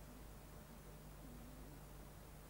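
Near silence: faint tape hiss over a low, steady mains hum.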